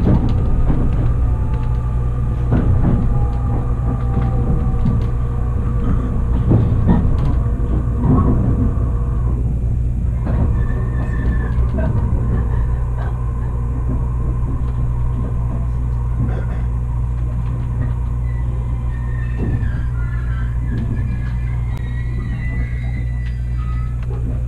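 Steady rumble of a JR HB-E300 hybrid railcar heard from inside the cabin as it slows into a station, with clicks of the wheels over the rail joints and faint high whines in the second half.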